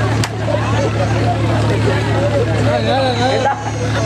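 Actors' voices amplified through a stage PA, some of it drawn out with a wavering pitch, over a steady low hum. There is one sharp click just after the start.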